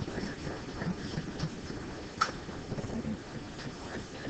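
Indistinct murmur of students talking among themselves in a lecture hall, with one sharp click about two seconds in.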